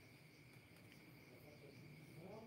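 Near silence: room tone with a faint, steady, high-pitched cricket trill.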